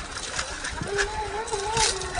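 Brushed 540 electric motor and gear train of a 1/10-scale RC rock crawler whining under load as it climbs, the pitch wavering slightly as the load changes. Scattered clicks and a brief scrape near the end from the tyres on rock and dry leaves.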